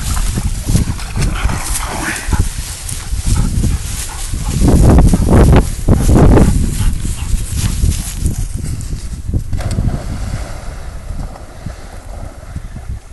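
A yellow Labrador retriever splashing into a creek and swimming, heard under heavy rumbling wind noise on the microphone, loudest about five seconds in.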